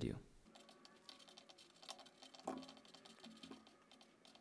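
Faint, rapid clicking of a computer keyboard, many keystrokes in quick succession.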